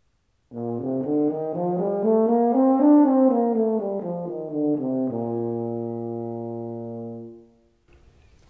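Euphonium playing a B-flat major scale in smooth, connected notes, climbing past the octave up to the D above and back down, then holding a long low B-flat that fades out near the end.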